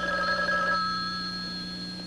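Telephone ringing: a single ring, already sounding, that fades away over about two seconds.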